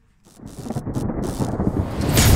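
Thunder-like rumbling sound effect that starts about a third of a second in and swells steadily louder, building up to an outro sting.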